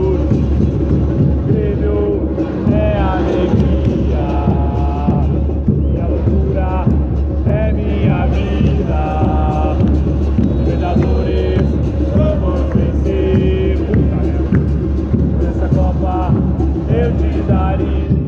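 A stadium crowd of football supporters singing a team chant together without a break, with nearby voices standing out over the mass of the crowd.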